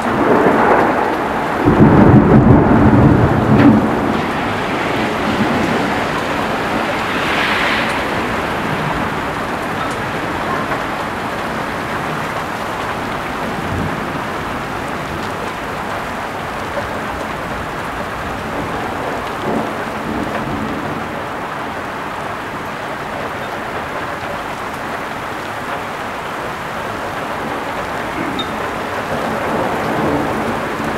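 A clap of thunder rumbling loudly for a few seconds near the start, over heavy rain that keeps falling steadily on the road and plants.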